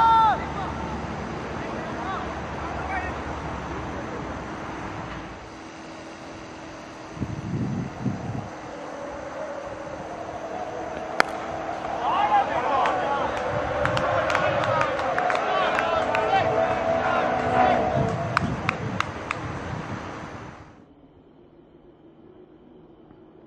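Open-field sound at a cricket match with wind noise on the microphone: a shout at the start, a single sharp crack about halfway through, then several seconds of many voices shouting and calling together. The sound cuts off abruptly near the end.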